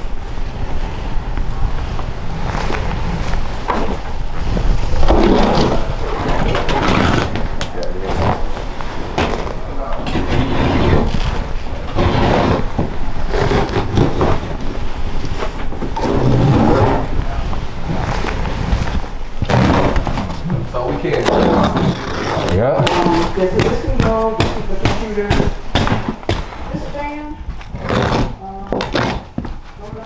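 Clean-out work noise: rustling, scraping and knocking of clutter and carpet being handled, with indistinct voices.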